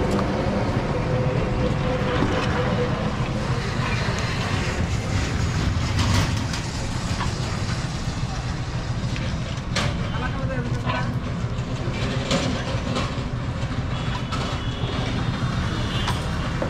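Roadside street noise: a steady low rumble with background voices, and a few sharp clinks of lids and utensils being handled at the pitha stall.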